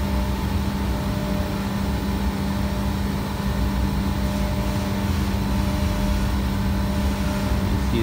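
Steady machine hum with a low rumble and an even hiss, holding one level throughout.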